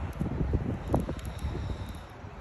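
Wind buffeting a phone's microphone: an uneven low rumble with gusty swells, and one short louder bump about a second in.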